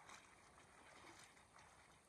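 Faint splashing and sloshing of shallow river water around a large rock being gripped and shifted by hand, with a few soft splashes in the first second and a half.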